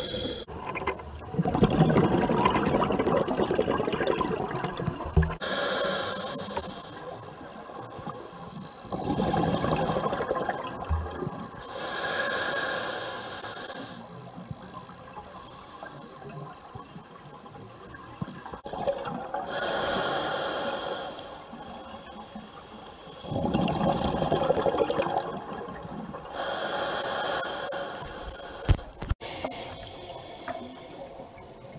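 Scuba diver breathing through a regulator underwater: hissing inhalations alternate with rumbling bursts of exhaled bubbles, a few seconds apart, with quieter pauses between breaths.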